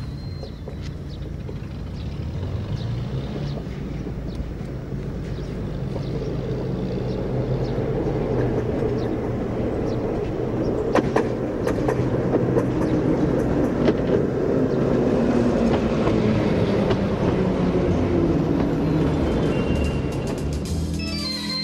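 A Riga-built RVZ-6 two-car tram set passing, its rumble growing louder as it nears. A few sharp clicks come around the middle, and a hum falls in pitch as it goes by.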